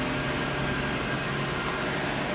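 Steady cabin hum and air rush of the 2011 Nissan Murano CrossCabriolet sitting with its 3.5-litre V6 idling and the ventilation fan running.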